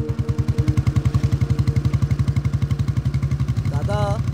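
Motorcycle engine running with a rapid, even thumping beat. Held notes of background music fade out under it a little before the end.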